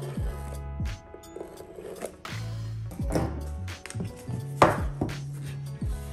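A folding knife cuts the paper seal label on a cigar box, and the box is handled on a tabletop. This gives scattered clicks and knocks, the loudest a sharp knock about four and a half seconds in. Background music with a steady beat and bass line plays throughout.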